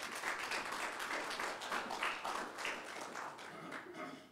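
Congregation applauding, many hands clapping together.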